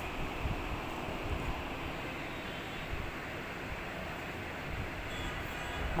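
Steady, even background noise, a continuous rush with no distinct events.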